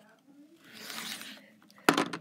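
Rotary cutter drawn along a ruler's edge through folded quilting cotton: one short scraping swish as it trims the fabric edge straight. A sharp click follows near the end.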